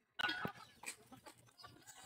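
A brief farm-animal call about a quarter of a second in, followed by a few faint clicks.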